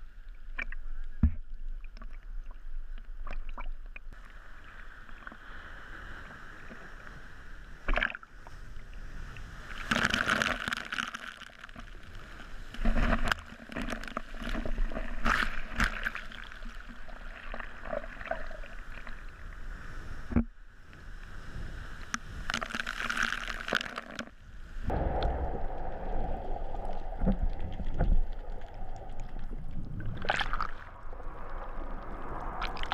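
Sea water sloshing and splashing against a waterproof action camera bobbing at the surface of choppy water, coming in irregular surges.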